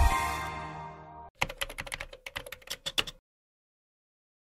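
The shimmering chord of a musical logo sting fading out, then a rapid run of computer-keyboard typing clicks lasting about two seconds, used as a sound effect.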